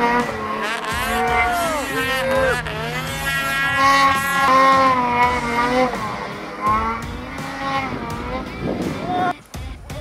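Snowmobile engine revving hard and repeatedly, its pitch swinging up and down as the rider works the throttle through deep powder; the engine sound cuts off suddenly near the end.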